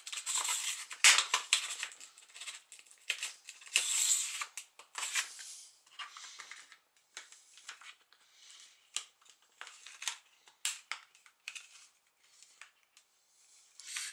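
Plastic screen bezel of an Acer laptop being pried off with a plastic card: irregular sharp clicks and snaps as its latches give, with the card scraping along the edge. The clicks come thick in the first half and grow sparse later.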